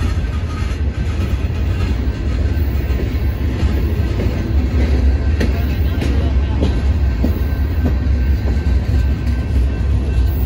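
Freight cars rolling past close by, their steel wheels rumbling steadily on the rails, with a few sharp clicks over rail joints between about five and seven seconds in.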